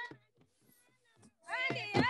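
A voice singing or chanting in gliding, held phrases, breaking off just after the start and leaving about a second of near quiet, then coming back in with a rising glide about one and a half seconds in.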